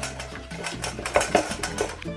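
A wooden spoon stirring a thick dressing in a stainless steel bowl, with quick repeated clicks of the spoon against the metal, over background music with a steady bass line.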